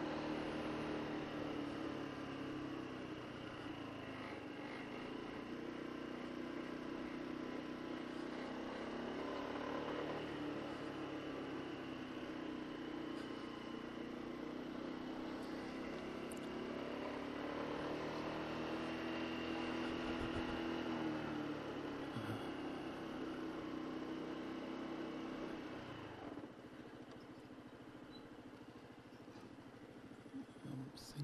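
Honda SH150i scooter's single-cylinder four-stroke engine running at low speed, its pitch rising and falling with the throttle, then dropping to a quieter idle near the end as the scooter slows to a stop.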